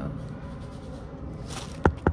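Quiet room noise, then a sharp click shortly before the end.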